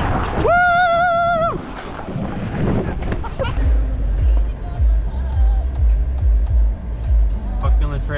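Rushing wind and snow noise of a ride down a snowy hill on a plastic saucer sled, with one held, wavering yell lasting about a second, shortly after the start. From about three and a half seconds in, background music with a heavy, steady bass beat takes over.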